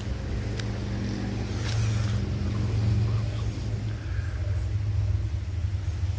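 An engine running steadily, a low, even hum.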